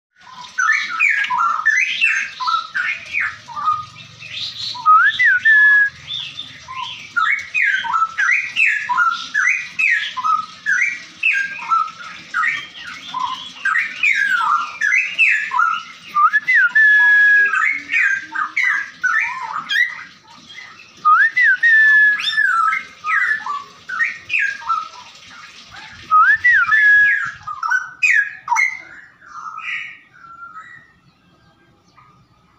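A caged songbird singing loud, near-continuous phrases of quick rising and falling whistled notes. A rising slurred whistle that levels off comes back several times through the song.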